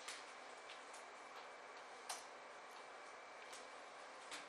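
A few faint, scattered clicks from a computer keyboard, about five in all, the loudest about two seconds in, over a faint steady room hiss.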